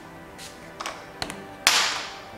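Skindinavia makeup finishing spray bottle's pump spritzed once near the end: a short, loud hiss of mist, after a couple of light clicks.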